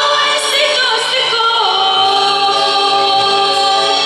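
A group of voices singing a song with a woman's voice leading, accompanied by a strummed acoustic guitar and an electronic keyboard. The notes are held and glide between pitches without a break.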